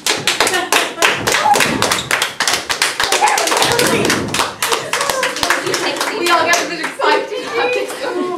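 A small group clapping their hands in dense, uneven applause, with voices calling out among the claps.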